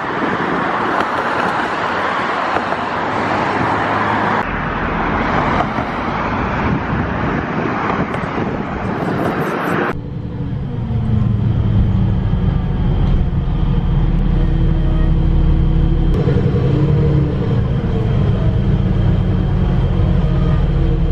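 Steady rush of road traffic for the first ten seconds. Then it cuts suddenly to the inside of a moving city bus: the bus's engine hum and road noise, with the engine pitch shifting briefly a few seconds before the end.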